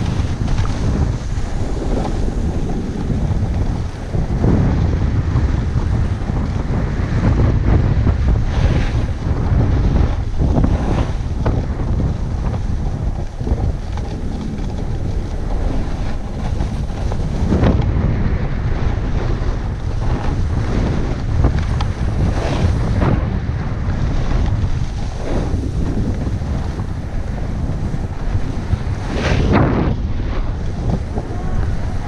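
Wind buffeting a helmet-mounted action camera's microphone during a fast run down a groomed ski piste. A low, steady rumble is broken every few seconds by short hissing scrapes as the edges carve into packed snow on each turn.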